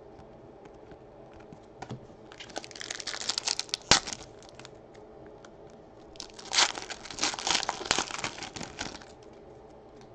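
Foil wrapper of an Upper Deck Allure hockey card pack crinkling and tearing as it is opened by hand. The crackling comes in two bursts, the first about two and a half seconds in and ending in a sharp snap, the second from about six to nine seconds.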